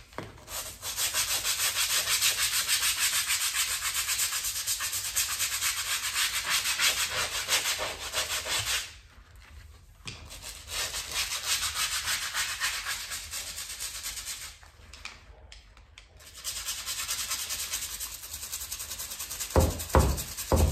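Small stiff bristle brush scrubbing a baseboard and the tile edge beside it in fast back-and-forth strokes, in three bouts with short pauses about 9 and 15 seconds in.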